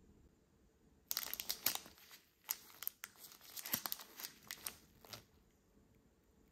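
Crinkly plastic packet of a strawberry daifuku handled in a gloved hand. It gives a run of sharp crackles that starts about a second in and lasts about four seconds.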